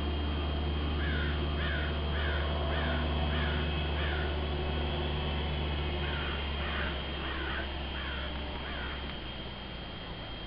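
A bird calling in two runs of short, repeated calls, each falling in pitch, about two a second: one run from about a second in, the second after a pause of about two seconds. A steady low rumble runs underneath and weakens in the second half.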